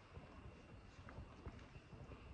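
Faint, irregular taps of fingers typing on a laptop keyboard over quiet room tone.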